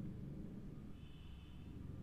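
Faint room tone: a steady low hum and hiss from the narration microphone, with a faint thin high tone for under a second mid-way.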